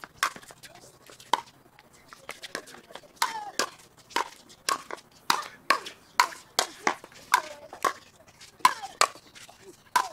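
Pickleball rally: hard paddles striking a plastic pickleball, a quick series of sharp pops about two a second that come closer together in the second half.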